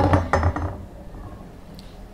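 A few light clinks and knocks of a kitchen knife and a ceramic plate in the first second or so, as halved hard-boiled eggs are handled.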